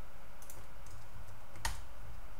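A few keystrokes on a computer keyboard, with the loudest near the end, over a steady low hum.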